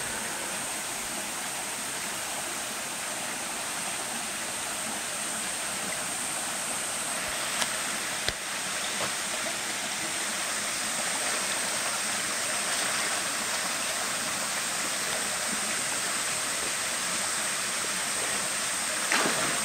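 Steady rushing of a rocky mountain river flowing between boulders, with two sharp knocks about eight seconds in.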